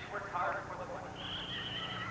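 Indistinct voices, then a single high, steady tone held for nearly a second near the end.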